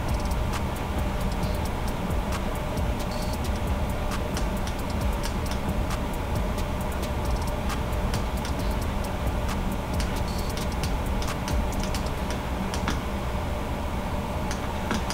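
Light, irregular clicking of computer keyboard keys as someone types and works in photo-editing software, over a steady low background hum.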